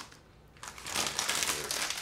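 A crinkly plastic snack bag of pork rinds rustling and crinkling as hands reach in and pull pieces out, starting about half a second in.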